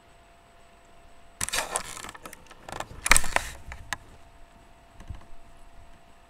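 Handling noise from a webcam being grabbed and turned: two loud rustling, scraping bursts with clicks, about a second and a half in and again around three seconds, then a few light clicks.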